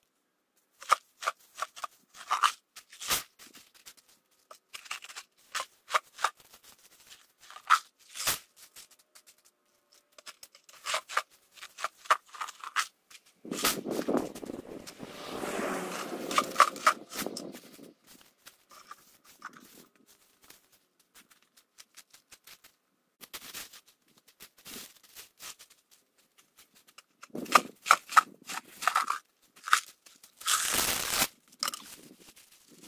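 Small gravel stones clicking and clattering in scattered bursts as gravel is spread by hand from a bucket, with a longer, denser rattle about halfway through.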